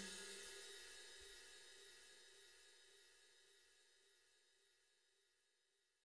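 The fading ring of a final cymbal crash from a MIDI drum kit. It dies away within the first half-second, leaving near silence.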